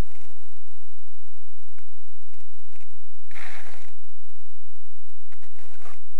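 Wind buffeting the small onboard camera's microphone, with handling knocks and rustle, and a louder gust of noise about three and a half seconds in.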